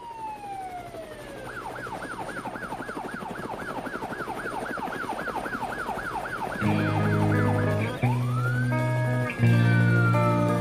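A siren sound opens the song. It starts as a falling wail, then turns into a fast yelping sweep up and down, about four times a second. About seven seconds in, electric guitar chords come in under it, and a slower wail rises and falls over them.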